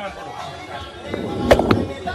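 Cricket bat striking the ball: two sharp cracks close together about a second and a half in, over background music.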